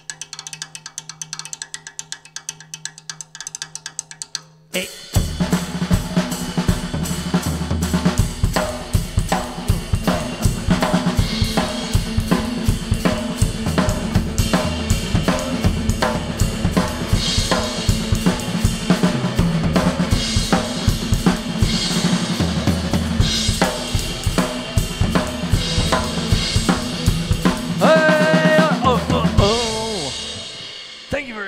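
Drum kit playing a triplet-feel rolling shuffle: light drumming at first, then from about five seconds in the full kit with kick drum comes in much louder, with electric guitar playing along, and a short shout of "Hey!" at the change.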